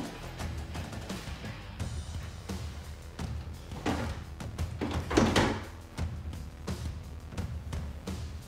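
Background music with a steady low beat, with a couple of duller thuds about four and five seconds in.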